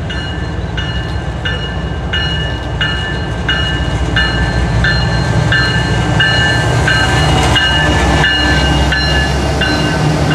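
Bell on the lead GE diesel locomotive of a CSX freight train ringing about twice a second as the train approaches and passes. Under it, the low rumble of the locomotives' engines and wheels grows louder.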